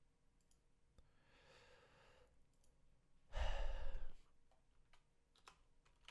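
A person's soft breath in, then a sigh breathed out close to a microphone, the air on the mic adding a low rumble. A few faint clicks near the end.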